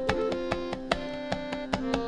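Tabla played softly, with a few light, spaced strokes, over the steady held notes of the melodic lehra accompaniment of a tabla solo.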